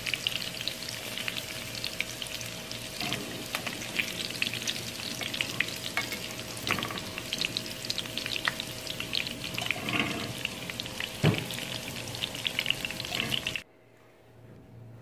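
Breadcrumb-coated chicken pieces frying in hot oil in a pan: steady sizzling with many small crackles and pops, which cuts off suddenly near the end.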